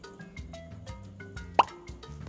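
Light background music with a steady beat, and about one and a half seconds in a single short, loud plop with a quick upward sweep in pitch, a cartoon-style sound effect marking a wooden puzzle piece set into its slot.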